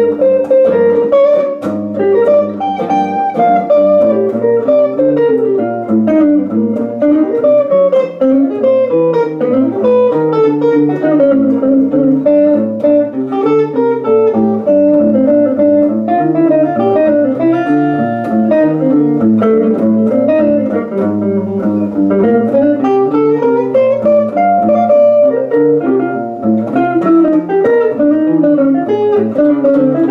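Two hollow-body archtop jazz guitars playing a jazz duo together, a moving single-note line over chords and bass notes, plucked continuously throughout.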